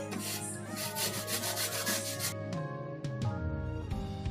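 Fresh turmeric rhizome rubbed back and forth on a flat metal grater: rapid, rasping scrapes that stop a little past halfway through. Background music plays throughout.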